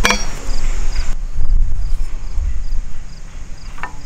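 Hawk Helium mini climbing sticks knocking against each other and the metal tree stand as they are handled: a sharp metallic clink at the start and a lighter click near the end. Underneath there is a low rumble and a cricket chirping about twice a second.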